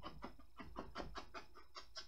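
Angled horsehair bristle brush lightly tapping oil paint onto a canvas in quick, faint dabs, about six or seven a second.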